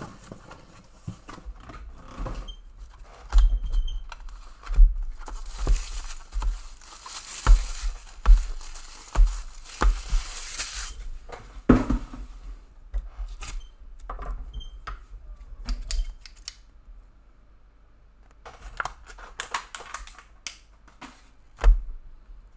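Plastic-wrapped trading card starter packs being handled and set down in a stack on a table: a run of clacks and knocks, with about five seconds of crinkling and tearing of wrapping in the middle.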